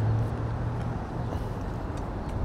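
Steady low rumble and hum of outdoor city ambience, like nearby traffic, slightly louder at the very start.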